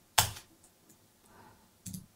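Computer keyboard keystrokes while typing code: one sharp key press just after the start and another couple of key clicks near the end, with quiet between.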